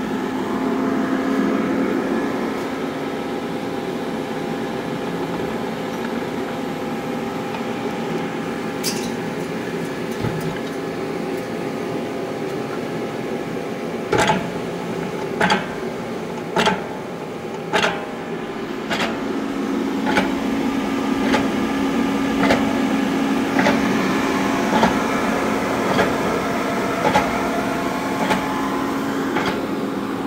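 Vemag Robot 500 vacuum stuffer running with a steady electric hum. From about halfway through, a sharp click comes about every 1.2 seconds as the machine portions.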